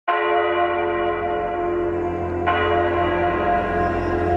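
Opening of an instrumental music track: a bell-like tone struck right at the start and again about two and a half seconds later, each ringing on over a steady low drone.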